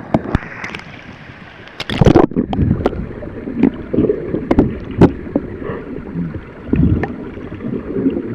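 Sea water splashing and churning around a swimming baby elephant at the surface, then about two seconds in the sound turns muffled as the microphone goes under water, leaving dull knocks and gurgling surges.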